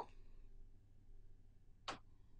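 Near silence: faint room tone, with a single short click near the end.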